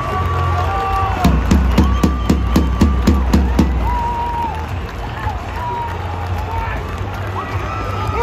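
Stadium crowd cheering over loud music from the PA system, with long held notes. A run of sharp beats, about three a second, comes in about a second in and stops halfway through.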